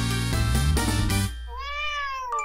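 A short intro jingle that stops a little past halfway, followed by a single cat meow that rises and then falls in pitch.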